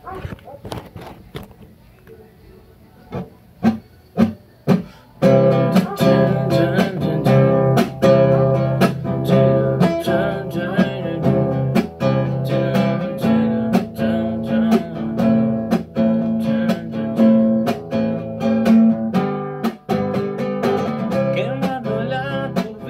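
Acoustic guitar: a few scattered strums and string strokes, then from about five seconds in, chords strummed steadily in a regular rhythm.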